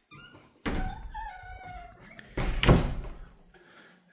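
Bifold closet doors being pulled shut: a thud about two-thirds of a second in, a squeak as they move, then a louder thud around two and a half seconds in.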